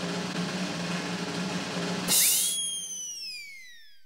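Intro sound effect: a snare drum roll for about two seconds, then a sudden bright crash with tones gliding downward as it fades away.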